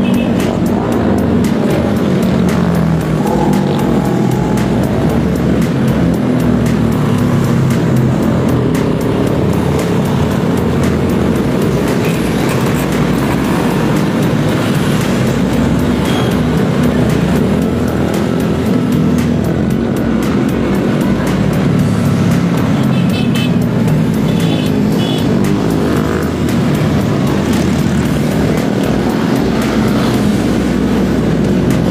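Motorcycles riding past one after another, their engines running and revving with rising and falling pitch, over background music.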